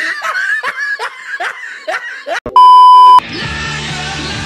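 A man laughing in quick repeated bursts, cut off by a loud steady beep tone lasting about half a second, the loudest sound here. Rock music starts right after the beep.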